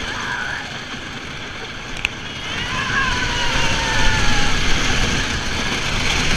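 Wooden roller coaster train running on its track, heard from onboard: a steady rumble of the wheels with wind rushing over the microphone. A sharp click comes about two seconds in, and riders' wavering screams rise over the rumble from about two and a half to four and a half seconds.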